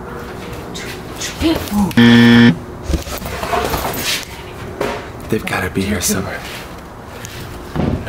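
Rummaging through stacked luggage, bags and a wicker storage box, with scattered knocks and rustles. About two seconds in there is a loud, flat buzz lasting about half a second.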